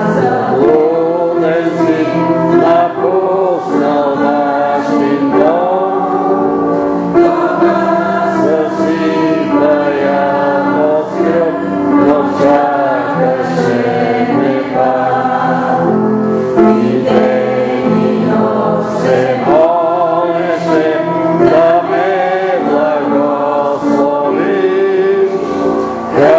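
A group of voices singing a hymn together in harmony, with slow, held notes.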